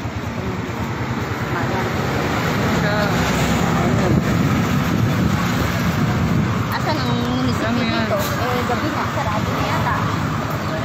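A motor vehicle engine running close by, over street traffic noise, with indistinct voices talking.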